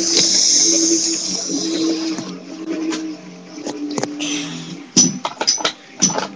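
Rustling handling noise as a webcam is carried about, then a few sharp knocks about five seconds in as it is set down, over a low steady hum.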